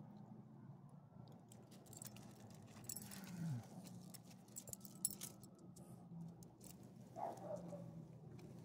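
A dog's metal collar tag jingling and clinking in short, irregular clicks as the dog moves about on its leash, over a low steady hum.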